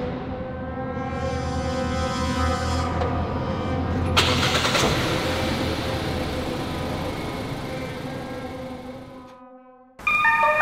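A car engine running with a low rumble and a steady whine. About four seconds in it gets louder and noisier, then it fades away near the end.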